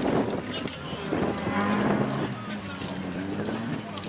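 Peugeot 206 rally car's engine held at steady high revs for about two seconds as the stranded car is pushed back out, with spectators shouting around it.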